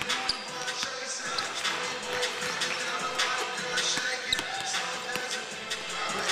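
Basketballs bouncing on a hardwood court over steady music, with a couple of sharper thuds, one just after the start and one about four seconds in.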